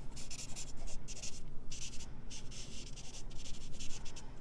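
Stampin' Blends alcohol marker scribbling across vellum: a series of short scratchy strokes of the felt nib, about two a second, with brief pauses between them.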